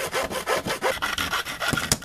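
Small hand saw cutting through a wooden board along a curved line, in fast, even back-and-forth strokes. The sawing stops near the end as the curved piece comes free.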